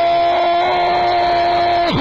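A male radio football commentator's long, sustained goal cry held on one high note. Near the end it breaks off with a falling pitch.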